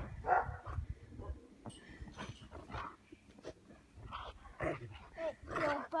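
Rottweiler barking in short, scattered barks while it jumps at a person in play; the barks get louder near the end.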